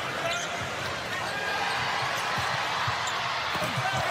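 Basketball dribbled on a hardwood court, with a few short sneaker squeaks over the steady noise of an arena crowd.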